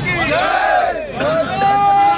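A crowd of men shouting together, many voices overlapping, some calls held long and high.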